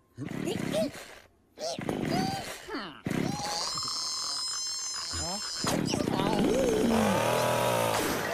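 Cartoon characters grunting and jabbering in short wordless bursts. About three seconds in, a chainsaw starts up suddenly and keeps running. Near the end, a long cry that rises and then falls rides over the saw.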